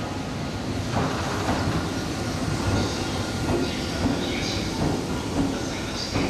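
The last 12-series passenger coach and the trailing EF60 electric locomotive rolling slowly past, the wheels clacking several times over rail joints under a steady rumble.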